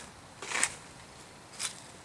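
A quiet pause with two brief, faint rustles, one about half a second in and a shorter one near the end.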